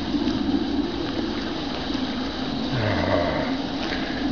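Leaves and twigs rustling and scraping against clothing and the camera as someone pushes through dense undergrowth, a steady rough noise.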